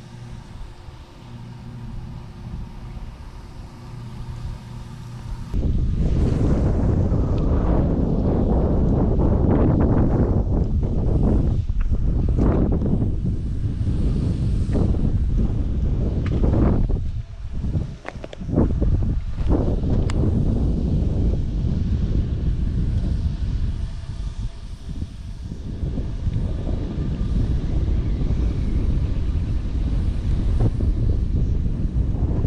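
Wind buffeting the microphone, a loud gusting rumble that starts abruptly about five seconds in and rises and falls for the rest of the time. Before it there is a quieter steady low hum.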